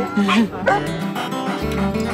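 A woman laughing, then background music with guitar coming in, its bass note starting about one and a half seconds in.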